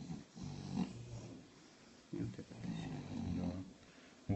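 A dog's low, drawn-out vocal sounds in two stretches: a short one near the start and a longer one from about two seconds in.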